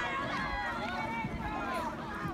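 Several voices shouting and calling at once, overlapping so that no words can be made out.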